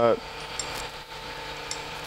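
Faint metallic clicks of a wrench and Allen key working a valve rocker arm's centre locking nut, over a steady low hum.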